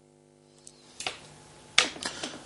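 A few short, sharp clicks over a faint steady hum, the last and loudest near the end.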